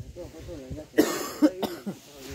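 People talking in the background, with a loud cough about a second in.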